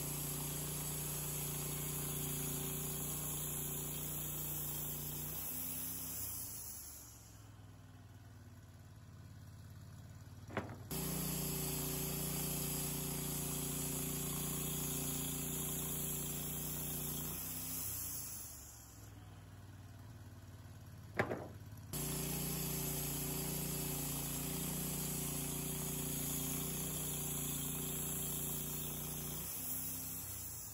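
Wood-Mizer LT30 band sawmill running, its engine holding a steady note while the blade saws through a red oak log. The sound comes in three spliced stretches: each dies away after several seconds and cuts off abruptly, and a brief click comes before the second and third.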